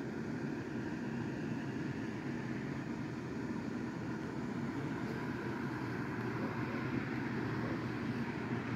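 Steady low whir of the electric blower fans that keep the inflatable Christmas yard decorations inflated, running continuously without change.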